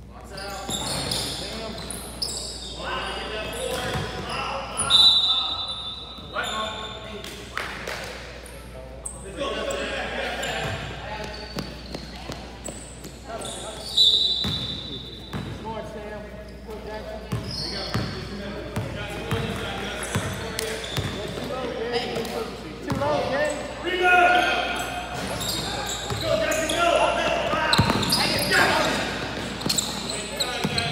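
Basketball bouncing on a hardwood gym floor during a youth game, with indistinct shouts from players and onlookers echoing in the large hall. Twice a brief, high steady tone cuts through.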